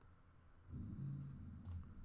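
Faint computer mouse clicks while picking through a font list. About a third of the way in, a man's low closed-mouth hum starts and lasts about a second.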